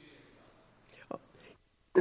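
Faint, muffled speech coming through a video-call audio feed, cut off in the highs, with a short click about a second in.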